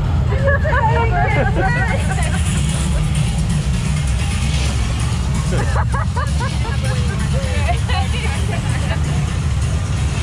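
Rafting riders' excited voices and laughter come in short bursts over a steady low rumble of wind buffeting the on-ride microphone.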